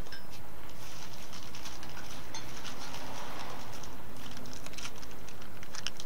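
Faint rustling and light clicks of small parts and a plastic package being handled, over a steady background hiss.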